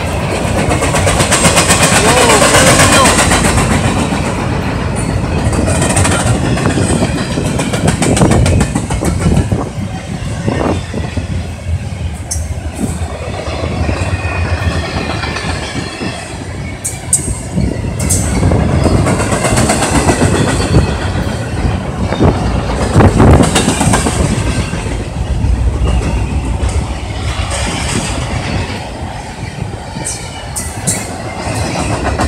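Double-stack intermodal container train passing close by: the steel wheels of the well cars run steadily and clack over the rail joints, with a few sharp knocks now and then.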